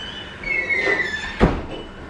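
A high, thin squeak that slides down in pitch, then a single sharp thump about one and a half seconds in.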